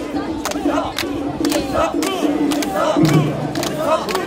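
A crowd of mikoshi bearers chanting and shouting in rhythm as they carry a portable shrine, with sharp clicks keeping time with the chant. A low held shout rises near the end.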